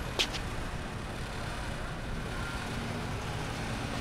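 City street ambience: a steady rumble of road traffic, with a brief hiss right at the start.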